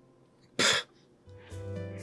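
A man gives one short, sharp cough while music is almost silent. Music comes back in with a low steady bass about a second later.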